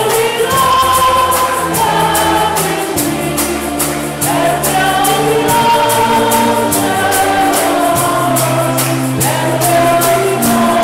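Church choir singing a hymn with instrumental accompaniment and a steady high percussion beat.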